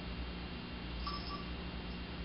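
Steady room tone: a low hum and hiss with no clear sound event, and a faint, brief, high two-note chirp about a second in.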